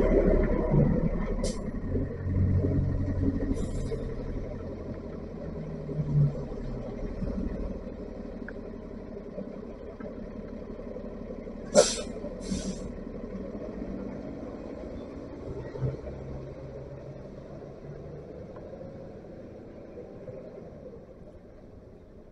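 New York City transit bus running close by, its engine rumble fading as it pulls away. Short hisses of air from its brakes come through, the loudest two in quick succession about halfway through.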